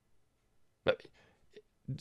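Speech only: a pause in near silence, then a man says one short, abrupt word about a second in and starts another near the end.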